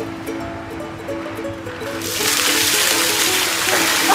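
Background music with a melody of held notes. About halfway through, ice water from a plastic cooler is dumped over a seated person: a sudden, loud rush of pouring and splashing water that continues.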